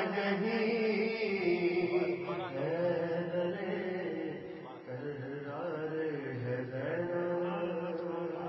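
A man's voice chanting a devotional poem in a melodic, drawn-out style, without instruments, holding long notes that bend up and down, with a short dip about halfway.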